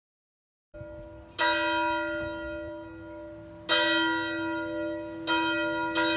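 A single church bell tolling. It comes in under a second in and is struck about four times, each strike ringing on into the next.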